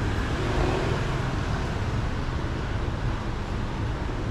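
Steady rumble and hiss of road traffic.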